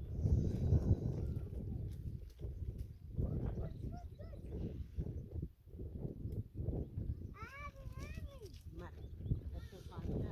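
Clothes being scrubbed and wrung by hand in a plastic basin of water, with irregular sloshing and rubbing. Voice-like sounds come through, and about seven and a half seconds in a high call rises and falls.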